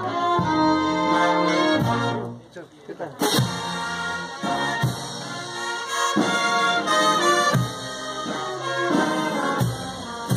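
A brass band playing a processional tune, with a brief lull about two seconds in before the band comes back in.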